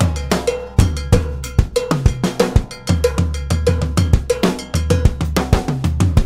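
Drum kit and timbales playing a fast salsa groove, with a cowbell struck in an even, repeating pattern and snare and bass-drum hits, over salsa band music with a bass line.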